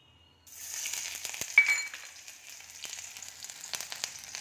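Ginger-garlic paste hitting hot oil in a kadhai with cumin seeds: it starts sizzling suddenly about half a second in and keeps sizzling and crackling. A single sharp metallic clink about a second and a half in is the loudest moment.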